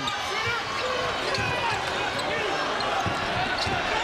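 Basketball being dribbled on a hardwood court, a few bounces standing out over steady arena crowd noise.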